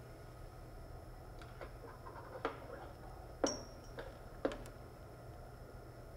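Light clicks and taps of a metal pitot-static tube being handled and aligned in its clear plastic mount, about six of them spread out. The sharpest, a little past three seconds in, leaves a brief high ring. A steady low hum runs underneath.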